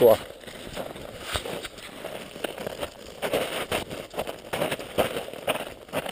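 Footsteps crunching in snow, an irregular run of short crackly steps while walking, with some rustle from the body-worn camera.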